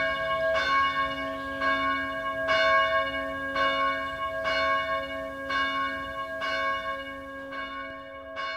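A single church bell tolling, struck about once a second, its tone ringing on between strokes.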